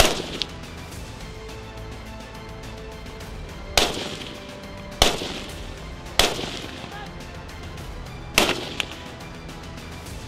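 Five single gunshots on a firing range, sharp cracks that fade quickly, fired at uneven intervals of one to four seconds, over background music.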